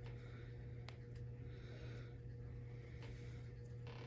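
Quiet room tone: a steady low electrical hum, with a few faint breaths swelling and fading and a couple of faint ticks.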